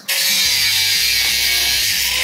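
Angle grinder with a cutting disc cutting through a steel bar: a loud, steady hiss of disc on metal.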